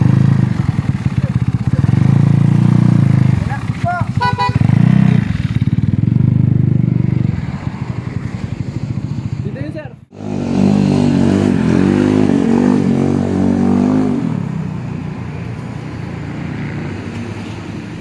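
Small motor scooter engine running, with its pitch and level surging a few times, and voices over it. A sudden break comes about ten seconds in, after which a different sound of steady pitched notes takes over and fades towards the end.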